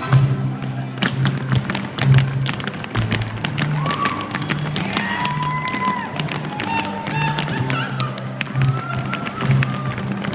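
Mexican folk dance music with a walking bass line, over the quick stamps and heel taps of folklorico zapateado footwork on a wooden gym floor.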